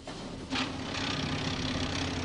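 Engine of a track maintenance machine running steadily with a low hum, joined about half a second in by a sudden, continuing hiss.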